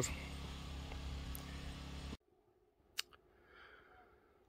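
Steady outdoor background noise with a low hum under it, cutting off suddenly about two seconds in. Then near silence, broken by a single sharp click about a second later.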